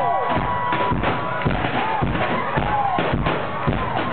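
A live pop band playing, with sung vocals over a steady kick-drum beat of about two hits a second. It is recorded from within the audience and sounds muffled, with little treble.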